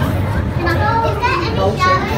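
Children's voices talking and calling out over each other, over a steady low hum.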